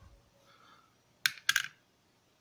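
Two light metallic clicks about a quarter second apart as a small 5.7×28 mm bullet is set down on the steel pan of a pocket digital scale.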